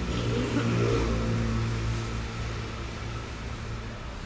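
A motor vehicle's engine running close by with a steady low hum, loudest about a second in and then slowly fading.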